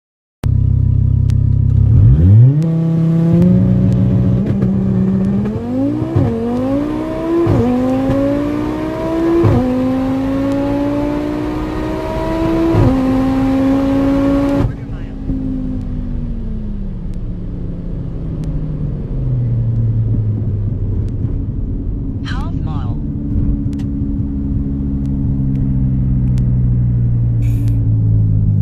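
2018 Audi TT RS's turbocharged five-cylinder engine under full-throttle acceleration, heard from inside the cabin. It rises in pitch through several upshifts, each a brief dip. About 15 s in the throttle closes abruptly and the engine settles to a lower, steady run as the car slows down.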